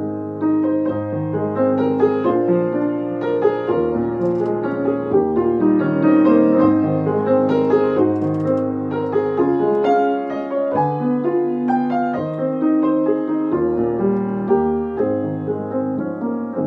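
Solo piano playing an improvised piece, with held bass notes changing about once a second under chords and a melody.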